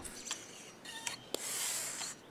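FX high-pressure hand pump being worked on a pump stroke: a hiss of air that swells in the second half, with a few light clicks. These are the first strokes, pressurising the hose before the rifle's reservoir begins to fill.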